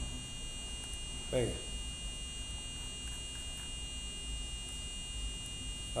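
A micro:bit's speaker sounding a steady, high-pitched buzzing tone from its running pitch program, over a low mains hum.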